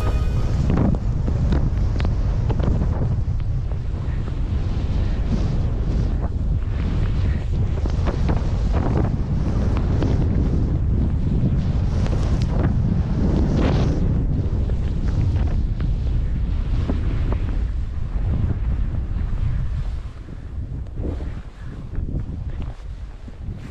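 Wind rushing over the camera microphone as a skier descends fast through deep powder, mixed with the skis pushing through the snow and repeated thuds as they turn. It drops away near the end as the skier slows in the deep snow.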